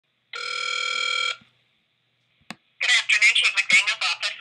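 Telephone call: a single electronic ringing tone lasting about a second, then a click as the line is picked up, and a voice answering over the line.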